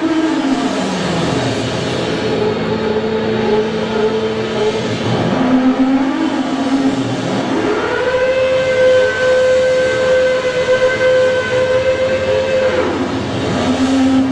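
Electric guitar through an amplifier holding long sustained notes that slide up and down in pitch, with one note held steady for about five seconds in the second half.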